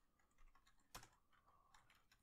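Faint computer keyboard typing: a few scattered keystrokes, one a little louder about a second in.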